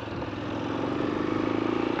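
Honda Twister 250 motorcycle's single-cylinder four-stroke engine running under way, its engine still in its break-in period. It pulls steadily, rising gradually in pitch and loudness as the bike accelerates.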